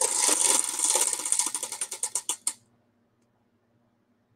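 Tabletop prize wheel spinning, its pegs clicking rapidly against the pointer; the clicks slow and spread out into separate ticks and stop about two and a half seconds in as the wheel comes to rest.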